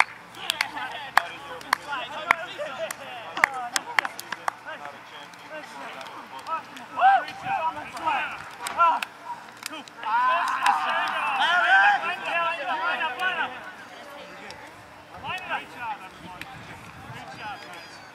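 Scattered hand claps in the first few seconds, then distant voices of players on an open field, with several voices shouting together for a few seconds around the middle.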